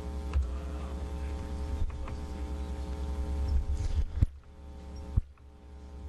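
Steady electrical hum in the recording, with two sharp clicks about four and five seconds in; after the first click the low hum drops and the sound goes quieter.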